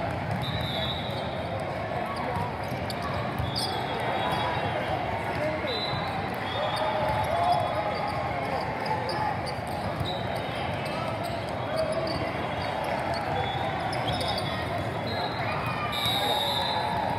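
Indoor volleyball rally in a large, echoing hall: the ball struck a few times, the loudest hit about halfway through, and sneakers squeaking on the sport court now and then, over steady chatter from the spectators and players.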